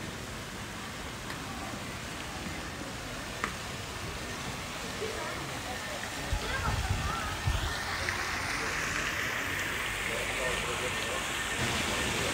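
Pedestrian street ambience: faint voices of passers-by over a steady hiss that grows brighter in the second half, with a few low bumps about halfway through.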